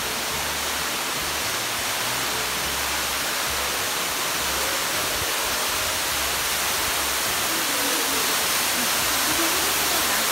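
Ruby Falls, an underground waterfall in a cave, giving a steady rush of falling water that grows slightly louder near the end.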